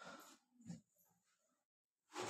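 Near silence: room tone, with a faint short sound in the first second.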